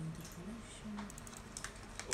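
Computer keyboard keys tapped in a quick, irregular run of light clicks.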